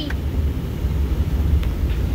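Steady low rumble of a car driving, heard inside the cabin, with a faint click about one and a half seconds in.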